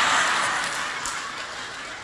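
A seated audience laughing together, the laughter dying away over the two seconds.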